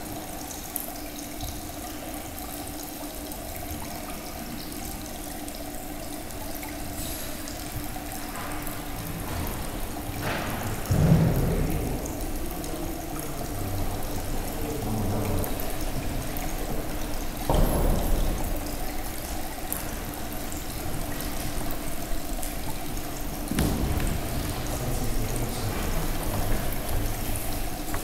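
Steady trickling water from a small stacked-stone fountain, over a low steady hum, with a few soft thumps about 11, 17 and 23 seconds in.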